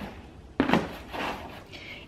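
A single short knock about half a second in, like an object set down on a tabletop, followed by faint handling sounds.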